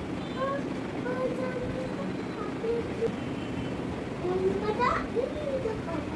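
A child's high voice talking and chattering over a steady background noise, with a quick rising squeal about five seconds in.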